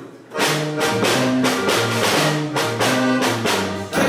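A live polka band strikes up about half a second in: accordion chords over a two-note oom-pah bass line, with snare and bass drum keeping a steady beat.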